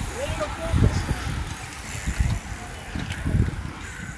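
A bunch of road-racing cyclists riding past close by, with irregular low rumbles and voices in the background.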